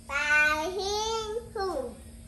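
A young child's high-pitched voice in drawn-out, sing-song calls without clear words: two held calls, then one that falls in pitch.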